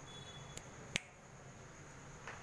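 Two sharp clicks about half a second apart, the second louder, over a steady high-pitched whine.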